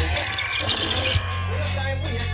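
Dancehall sound-system music played loud over a PA, with an MC's voice on the microphone. A bright, noisy rush fills the first second, then a deep, steady bass line comes in just over a second in.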